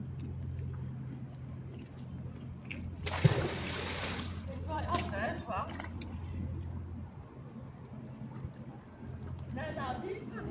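A magnet-fishing magnet landing in canal water: a sharp splash about three seconds in, followed by a second or so of sloshing. A steady low hum runs underneath.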